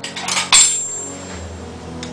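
A metal spoon scraping and clinking against a bowl while scooping out chocolate-hazelnut cream, with one sharp clink about half a second in that rings briefly.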